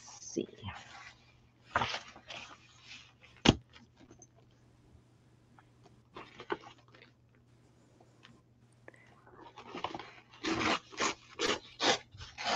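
Paper being handled and shifted, with a sharp tap about three and a half seconds in, then, from about ten seconds in, a quick series of rips as a strip of old printed paper is torn along the edge of a steel ruler.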